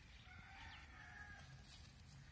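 Faint rooster crowing once, one call lasting about a second, over a low steady rumble.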